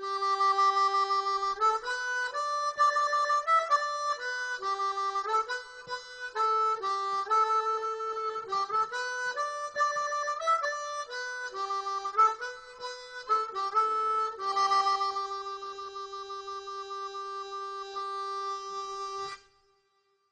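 Suzuki Pipe Humming diatonic harmonica playing a tune in chords and single notes. It ends on one long held chord that wavers slightly as it begins and stops about a second before the end.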